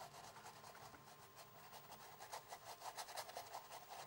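Faint, rapid scratchy strokes of a paintbrush's bristles scrubbing through acrylic paint.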